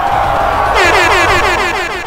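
Trailer music or sound effect: a dense swell of sound, then from under a second in a rapid run of short falling notes, about nine a second.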